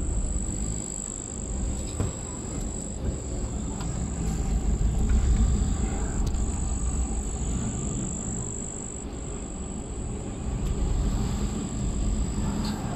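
Low rumble of a car moving slowly, heard through its open window, swelling about halfway through, with a steady thin high whine throughout.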